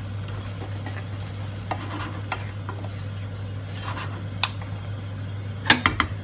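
A wooden spoon stirs a wet curry in a non-stick pan, giving a few short knocks and scrapes against the pan. The loudest knock comes near the end, over a steady low hum.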